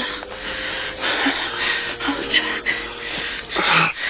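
Breathy whispering and breathing between two people close together, over a single steady held tone that stops about three and a half seconds in.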